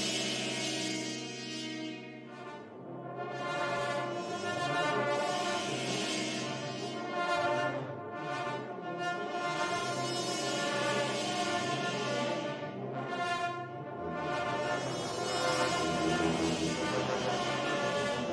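Sampled orchestral brass from the Battalion Kontakt library, played from a keyboard: layered horns and brass in repeated swelling chords over a held low note, which changes about fourteen seconds in.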